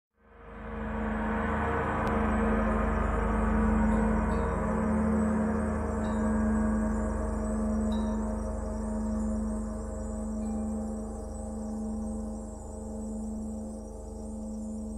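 Tibetan gong music: a gong swells in at the start and rings on as a sustained, slowly pulsing drone of many tones that gradually dies away.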